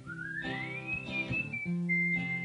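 A person whistling over acoustic guitar: the whistled note slides upward and wavers, then settles into a steady held note near the end, with the guitar chords ringing beneath.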